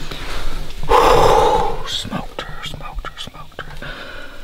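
A man whispering and breathing heavily, with one long breathy exhale about a second in.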